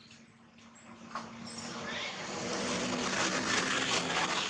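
A motor vehicle passing by: engine and road noise swelling steadily from about a second in, loudest near the end.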